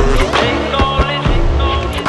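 Turntablism scratch-music track: a hip hop/electro beat with heavy bass hits and scratched vinyl sounds cut over it.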